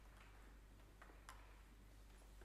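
Near silence: room tone with a low hum and two faint clicks about a second in.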